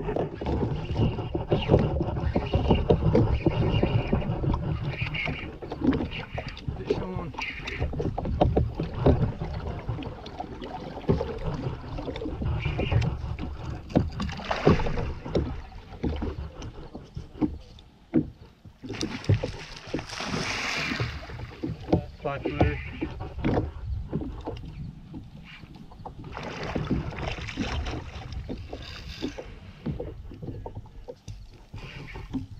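Knocks, rumble and water sounds from a fishing kayak while an angler fights a hooked alligator gar, with shouted exclamations. The sound starts suddenly and loud, with several louder noisy outbursts later on.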